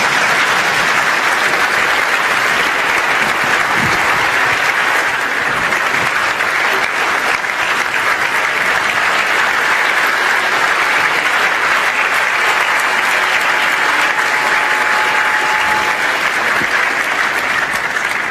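Large audience applauding, a steady dense clapping that begins to die away at the very end.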